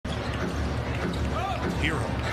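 A basketball being dribbled on a hardwood court, over steady arena crowd noise.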